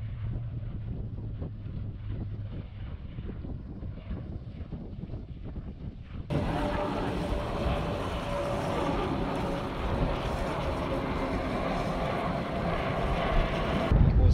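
Wind rumbling on the microphone by the sea. About six seconds in the sound changes suddenly to a jet airliner flying low on its landing approach, its engines making a steady whine over a broad roar that grows a little louder near the end.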